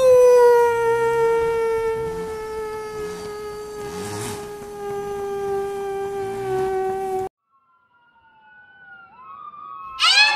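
A man howling like a wolf: one long held howl that rises briefly and then slowly falls in pitch for about seven seconds before cutting off suddenly. Near the end a faint siren wails in.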